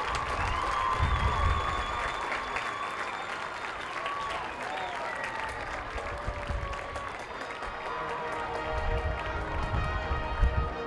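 Crowd applauding, with music playing underneath.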